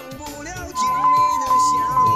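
Railway level-crossing warning bell starts about three-quarters of a second in and rings about twice a second, with a steady high ding: it signals that a train is approaching the crossing. A song plays underneath.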